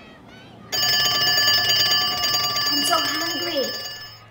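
Electric school bell ringing, a steady metallic rattle that starts suddenly about a second in and fades near the end. A short burst of voice sounds over it shortly before it stops.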